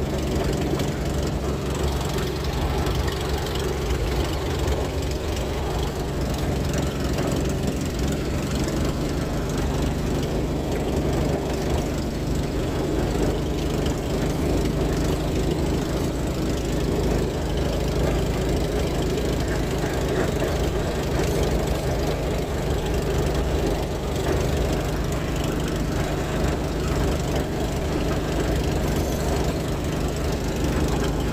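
A light aircraft's engine and propeller running steadily at low power while the plane taxis.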